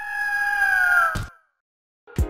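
A single long bird cry sound effect that holds its pitch and then slides down at the end, cut off by a short sharp knock just over a second in.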